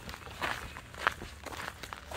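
Footsteps on a paved path at a walking pace, a few short scuffing steps over a low rumble of handling noise.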